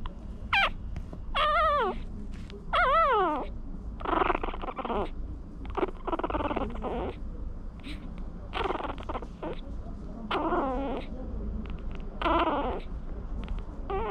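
Newborn Maltese puppies babbling in their sleep: about eight short, squeaky whines and grunts, several of them sliding downward in pitch.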